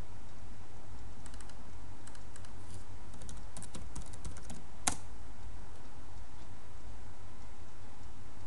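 Computer keyboard typing: a quick run of keystrokes lasting about three and a half seconds as login details are entered, ending in one sharper, louder click about five seconds in. A steady low electrical hum sits underneath.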